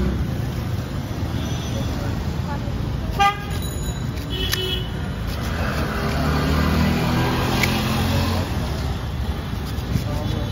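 Street traffic: a steady rumble of passing vehicles, with a short car horn toot about three seconds in and another brief beep about a second later.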